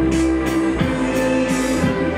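Live band playing: held keyboard notes and electric guitar over a drum beat, with a drum hit and cymbal wash about every 0.7 seconds.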